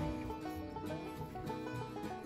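Quiet background music with plucked string notes, in a country or bluegrass style.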